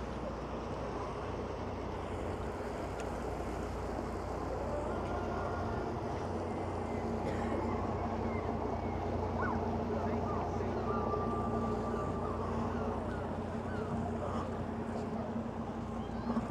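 A small fishing boat's engine running as the boat motors slowly past close by, a steady low hum that grows a little louder in the middle as it passes.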